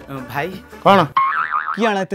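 A comic sound effect laid over a sketch: a wobbling, warbling tone that starts abruptly about a second in and lasts about half a second, between spoken words.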